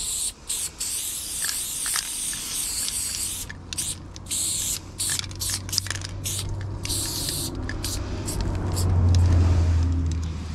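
Aerosol spray paint can hissing in short bursts and longer sprays with brief breaks as paint is laid onto a block wall. A low rumble builds in the second half and is loudest near the end.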